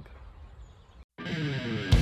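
Faint outdoor background for about a second, then a moment of dead silence at a cut, after which intro music starts, swells and breaks into a steady, loud beat near the end.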